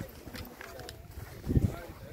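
A dove cooing amid people's voices, with a brief, louder low sound about three-quarters of the way through.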